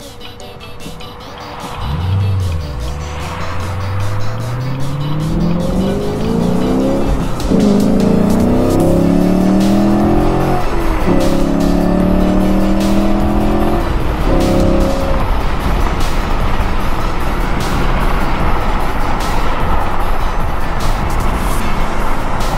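2017 Camaro SS's 6.2 L LT1 V8, with catless ARH off-road connection pipes in place of the high-flow cats, accelerating hard from inside the cabin. The engine note climbs in pitch and drops at each of about three upshifts, then settles into a steady highway cruise with road and wind noise.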